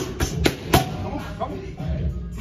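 Boxing gloves striking focus mitts in a quick combination: about four sharp smacks within the first second, then a lighter one.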